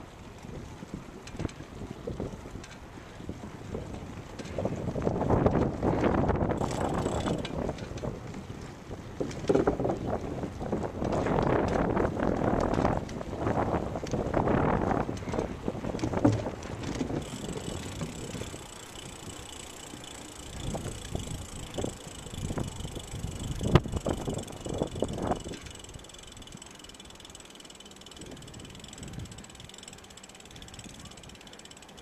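Wind buffeting the microphone in gusts, loudest in the first half, over the mechanical ticking and rattling of a bicycle being ridden. A faint, steady high whine comes in about halfway through.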